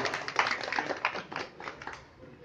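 A small group applauding, a quick irregular patter of hand claps that dies away near the end.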